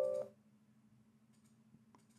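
The end of a short musical chord of several held notes, fading out in the first third of a second, then near silence with a faint low hum.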